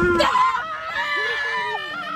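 Women screaming in fright: long shrieks whose pitch wavers.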